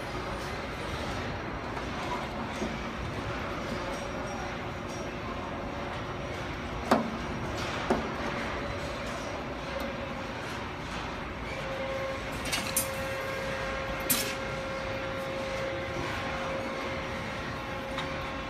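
Steady background hum and hiss, with two sharp knocks about seven and eight seconds in and a few short clicks a few seconds later.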